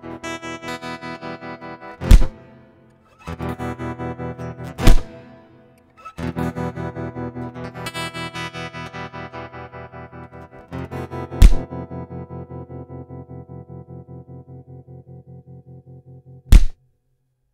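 Soundtrack music: distorted electric guitar chugging an even, fast rhythm of about six strokes a second. Three loud, sharp hits cut across it. The music breaks off briefly after the first two and fades away after the third.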